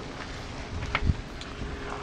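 Steady outdoor background noise with a low wind rumble on the microphone, and a single dull thump about a second in.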